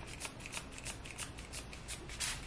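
Trigger spray bottle squeezed over and over, a quick series of short hissing sprays of water-and-conditioner mist onto hair, about four or five a second.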